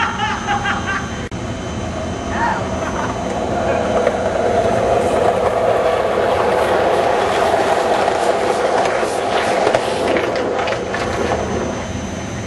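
Skateboard wheels rolling down a steep concrete slope, a steady rumble that grows louder as several riders come closer, with brief shouts near the start.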